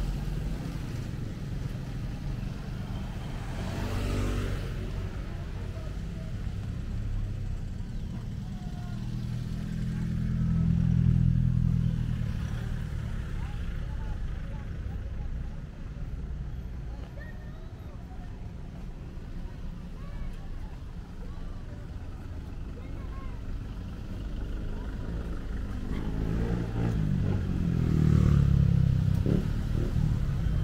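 Street traffic: a steady low engine rumble from passing cars and motorcycles, swelling as vehicles pass close, about ten seconds in and again near the end.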